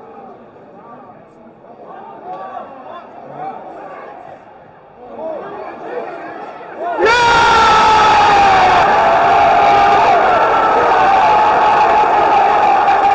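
Football stadium crowd murmuring with scattered shouts as an attack builds, then about seven seconds in the crowd suddenly bursts into very loud cheering with sustained shouts from fans close by: the cheer of a home goal, Rodri's late equaliser.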